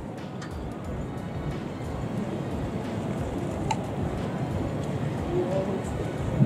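Steady outdoor background noise, a low even rush, with faint distant voices briefly near the end.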